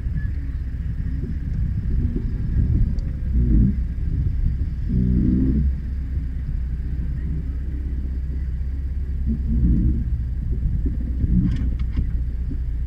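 A 4x4's engine running at low revs, heard from inside the cab as a steady low rumble, with brief louder swells about three and a half and five seconds in as the truck creeps forward.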